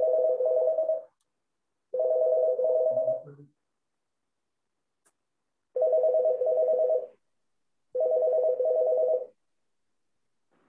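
A telephone ringtone ringing in a two-note warble, in pairs of rings each about a second long with silence between the pairs, four rings in all.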